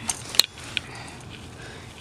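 Handling noise: a sharp click about half a second in and a fainter tap shortly after, over quiet room tone.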